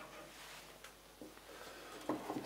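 Near silence: quiet room tone with a couple of faint ticks about a second in.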